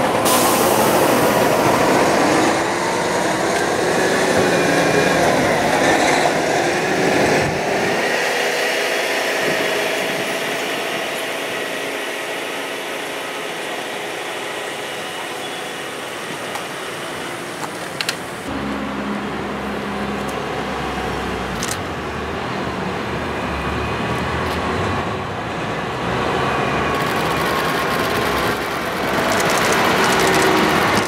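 Heavy truck's diesel engine and tyres as it tows a low-bed trailer past, loudest in the first several seconds, then a quieter stretch of road noise with one sharp click, rising again as the truck approaches near the end.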